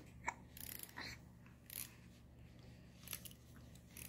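A quiet room with a low steady hum and a few faint, brief clicks and rustles, about four, scattered through the moment.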